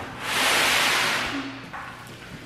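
Large cardboard box scraping and rubbing as it is dragged and tipped up on end: one long rasp lasting about a second.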